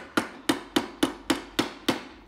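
Wooden mallet tapping a thin silver strip over a tapered metal mandrel, bending its edges into a curve: seven quick, even blows, about three or four a second.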